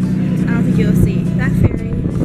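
A steady low engine hum that cuts off suddenly near the end, with voices over it.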